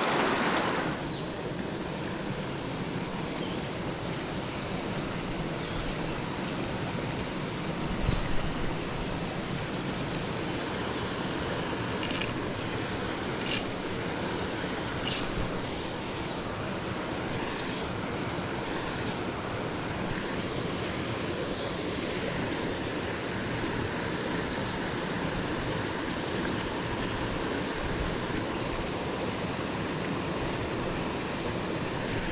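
Steady rush of a small rocky mountain stream running over stones. Three brief, sharp clicks come about halfway through.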